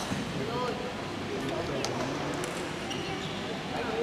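Indistinct distant voices over the steady background noise of an indoor sports hall, with a few faint clicks.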